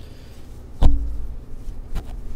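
A fabric tote bag being shaken open and handled close to the microphone, with low rumbling handling noise, one sharp loud thump about a second in, and a smaller click near the end.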